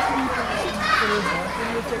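Many schoolchildren's voices at once, chattering and calling out over one another as they play.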